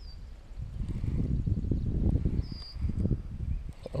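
Low, uneven rumbling handling noise close to the microphone as a baitcasting reel is cranked and the rod is worked to hop the lure. Two short, high chirps are heard, one at the start and one about halfway through.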